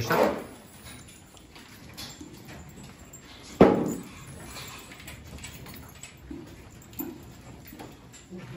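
Beef cattle in a barn standing at the feed barrier, with one sudden loud burst of noise about three and a half seconds in that dies away within half a second, and a few faint knocks later on.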